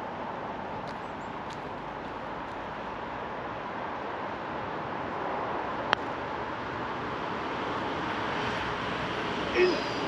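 A single sharp click of a putter striking a golf ball about six seconds in, as he putts for bogey, over a steady rushing background noise that slowly grows louder.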